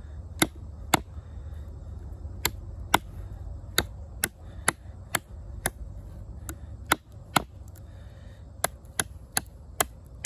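OdenWolf W3 fixed-blade knife chopping into a branch laid on a wooden stump, about sixteen sharp blows at roughly two a second in short runs, each striking wood as chips fly from a growing notch.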